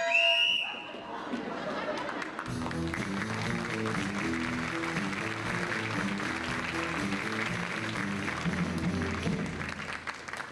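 A short shrill note opens, then audience applause in a hall, and about two and a half seconds in the pit band starts scene-change music with a stepping low bass line under the clapping.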